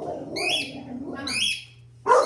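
Pet cockatiel calling with short, high chirps, one near the start and another about a second later, over a lower noisy sound.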